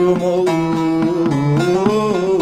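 Bağlama (long-necked Turkish saz) played live in a folk song (türkü), its plucked notes under a man's voice holding a long, wavering sung note.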